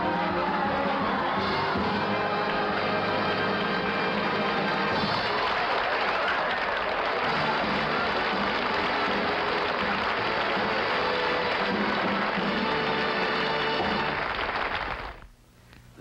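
Music with audience applause and cheering under it, running at an even level and cutting off about a second before the end.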